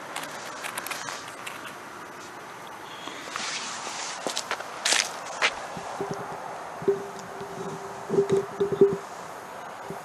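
Rustling and crackling in dry leaf litter as a tennis ball and a ping pong ball are set down, then crunching footsteps on the leaf-strewn ground. From about six seconds in, a steady low tone of unknown source runs under a cluster of sharp clicks, the loudest near the end.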